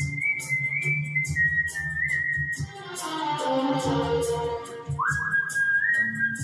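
A man whistles a Hindi film song melody into a microphone over a karaoke backing track with a steady beat. The whistled line warbles with quick ornaments for the first couple of seconds, breaks off while the backing instruments carry a falling phrase, then returns about five seconds in with a quick upward slide into a held note.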